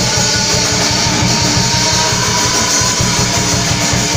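Loud live rock music from a band: electric guitar played over a fast, steady drumbeat.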